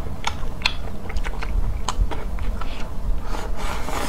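Close-miked eating: wet chewing clicks and smacks, then near the end a longer rasping slurp as a mouthful of shredded, noodle-like strands is sucked in.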